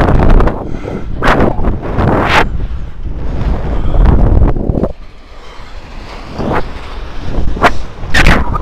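Wind buffeting the microphone of a camera carried by a rope jumper swinging through the air on the rope: a loud, low rush that surges and fades, easing briefly about five seconds in.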